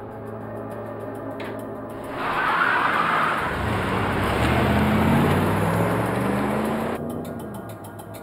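A 1980s Chevrolet Caprice sedan pulls away and accelerates. Its engine and tyre noise swell about two seconds in, the engine note rises, and the sound cuts off suddenly about seven seconds in.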